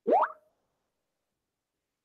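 A single short bloop that rises quickly in pitch, lasting about a quarter of a second, right at the start.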